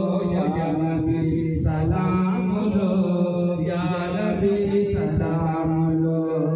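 A man chanting an Islamic devotional recitation into a microphone, amplified over a loudspeaker, in long held melodic phrases with short breaths between them.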